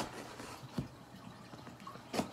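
Pocket knife slitting the packing tape on a cardboard box: a faint scraping with two short clicks, a sharper one a little under a second in.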